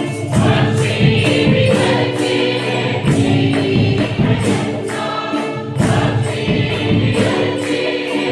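Church choir of women and men singing a praise and worship song together, with a steady percussion beat of about two strokes a second.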